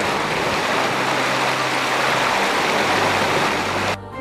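Steady rushing noise of running water, like a mountain stream, that cuts in and out abruptly.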